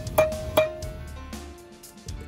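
Background music: held plucked-instrument notes with a couple of light percussive hits in the first second.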